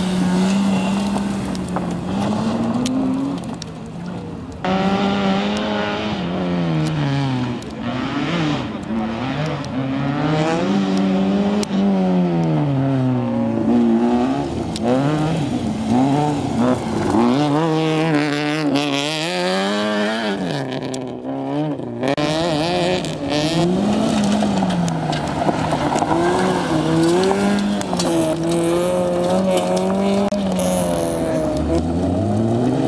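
Rally car engines revving hard and lifting off again and again on a tight gravel slalom course, the pitch climbing and dropping every second or two. Tyres scrabble and slide on the loose surface.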